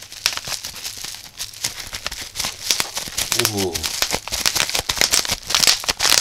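Plastic bubble-wrap bag crinkling and crackling as it is handled and pulled open by hand, in a dense run of small crackles.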